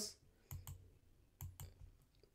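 Faint clicking: two quick pairs of short clicks, the second pair about a second after the first.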